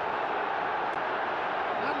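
Football stadium crowd noise, a steady dense din of fans cheering just after a late goal. A commentator's voice comes in right at the end.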